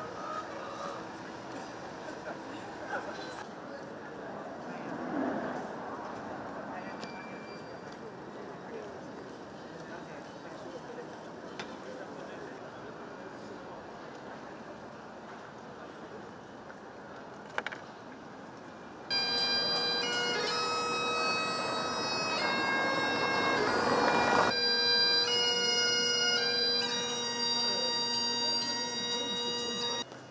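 Low street background noise, then about two-thirds of the way in a Great Highland bagpipe starts playing, much louder: a steady drone under a changing chanter melody.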